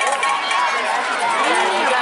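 Many voices calling and shouting over one another, including drawn-out rising-and-falling calls, from football players and sideline spectators.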